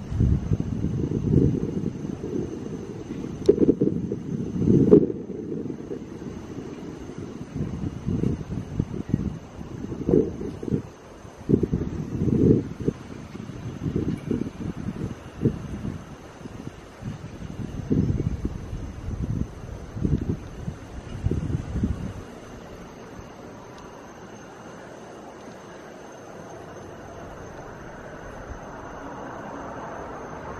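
Wind gusting against the camera microphone in irregular low rumbling buffets, with a couple of sharp clicks early on, dying down about two-thirds of the way through to a quieter steady hiss.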